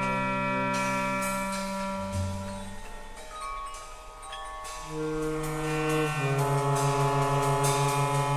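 Free-jazz trio of clarinet, tenor saxophone and drums: the two horns hold long, overlapping notes while scattered drum and cymbal strikes fall around them. The horns thin out and grow quieter about two to four seconds in, then come back with new sustained notes, one with a fast wavering.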